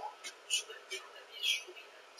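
Quiet whispered speech, made up of short hissing bursts with little voice behind them.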